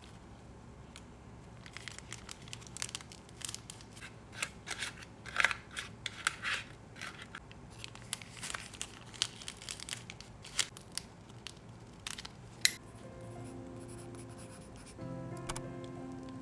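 A thin plastic piping bag crinkling and rustling in the hands as soft candy paste is scooped into it with a small plastic spoon, ending with a sharp click. Soft background music with held notes comes in for the last few seconds.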